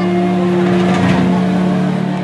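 Live rock band holding a loud, sustained droning chord, with a brief swell about halfway through.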